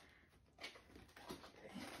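Near silence, with a few faint rustles and taps of a cardboard box flap being opened.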